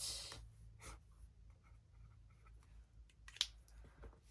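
Faint handling noises in a quiet room: a soft rustle at the start, scattered light taps, and one sharper click about three and a half seconds in, over a low steady hum.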